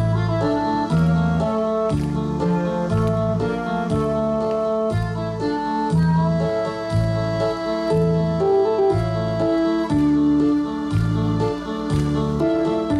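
Backing-track music for a saxophone sing-along, played through the PA: a steady bass beat with held keyboard chords above it, without the saxophone.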